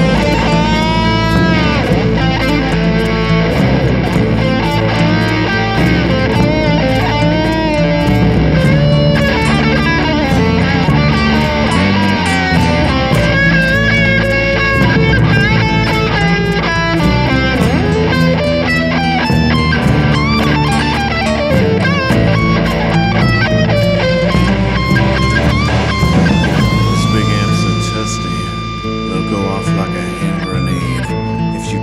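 Blues-rock band instrumental with an electric guitar lead playing bent, wavering notes over rhythm guitar, bass and drums. It ends on a long, steady held note in the last few seconds.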